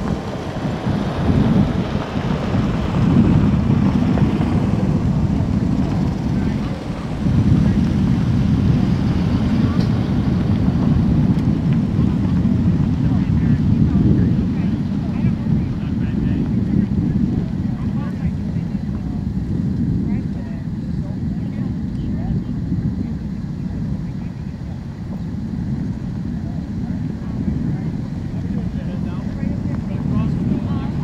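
Steady low rumble of wind on the microphone mixed with the noise of vehicles driving slowly past through a parking lot; one passes close in the first few seconds, adding brighter noise.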